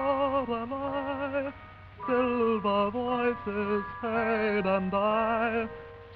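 Vintage 1920s–40s recording of a dance-band or theatre orchestra playing a melody with strong vibrato over sustained accompaniment, in phrases broken by a brief pause about a third of the way in. The sound is dull and lacks treble, as old recordings do.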